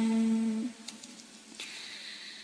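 A chanting voice holds the last syllable of a verse line on one steady note. The note fades out about two-thirds of a second in, leaving a short, quiet pause with a couple of faint clicks.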